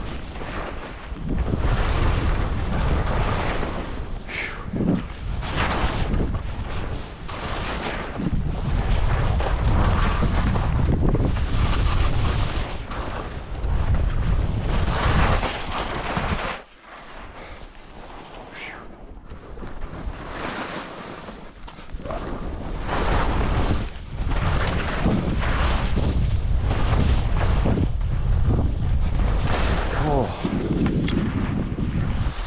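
Skis scraping and hissing over packed, chopped-up snow through a series of turns, each turn a swelling rush of noise, with heavy wind rumble on the microphone. The sound drops back for a few seconds a little past halfway, then builds again.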